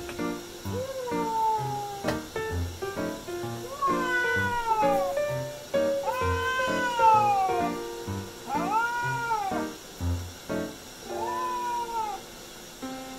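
A wet cat meowing repeatedly while being bathed in a washbasin: about five long, drawn-out cries, several sliding down in pitch. This is the complaint of a cat that dislikes baths.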